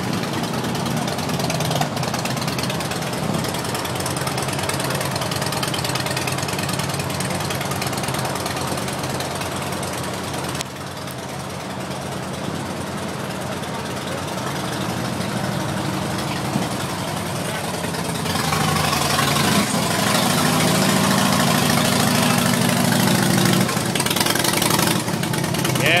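Chatter of an outdoor crowd, then, in the last part, a 2009 Harley-Davidson Rocker C's Twin Cam 96 V-twin, fitted with an aftermarket air intake and exhaust, idling steadily on a dynamometer, louder than the chatter before it.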